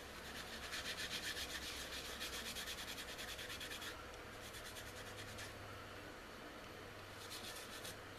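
A hand rubbing and brushing shavings off a rough silver maple blank turning on a wood lathe: a rapid rhythmic rasp that is strongest for the first few seconds, eases off, and comes back briefly near the end, over the lathe's low hum.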